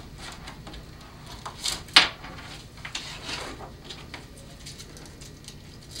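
Handling noise of a strap being threaded under a plastic tray and around a plastic bottle: soft rustles and scrapes, with a sharp click about two seconds in.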